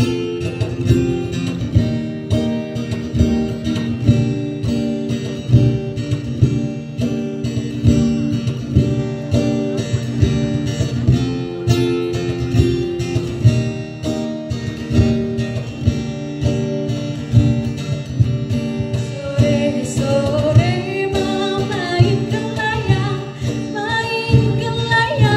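A plucked string instrument plays a steady, rhythmic accompaniment with repeated plucked and strummed notes. About three-quarters of the way through, a woman begins singing over it.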